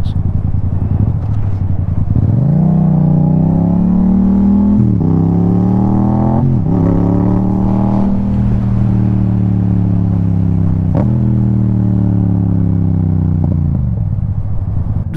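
Motorcycle engine pulling away: its pitch climbs about two seconds in, drops and climbs again at two gear changes a few seconds later, then holds at a steady cruise. A single tick is heard near the end.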